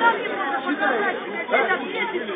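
A crowd of people talking over one another: many overlapping voices at once, none standing out clearly.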